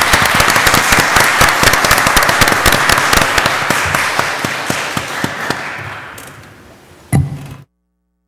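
Audience applauding, a dense clatter of many hands clapping that slowly fades away. A single knock comes near the end, then the sound cuts off abruptly.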